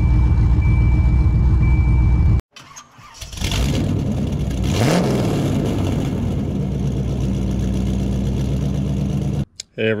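Swapped 5.3 L LS V8 idling steadily with a thin steady high whine over it. After an abrupt cut, an engine starts: a surge with a rising rev about five seconds in, then it settles into a steady idle.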